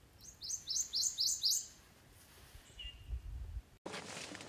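Prothonotary warbler singing: a quick run of about seven rising notes over a second and a half, then one faint note. A brief low rumble follows near the end.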